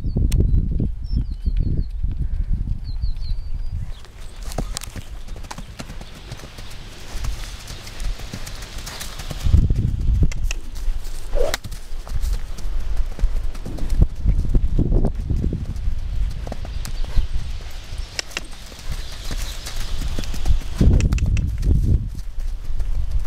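Hoofbeats of a young Missouri Fox Trotter filly moving around a round pen, muffled by the sandy ground, with uneven low thumps throughout.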